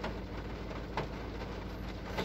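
Volkswagen Polo's 1.5 TDI four-cylinder diesel engine idling steadily, heard from inside the cabin, with two light clicks about a second apart.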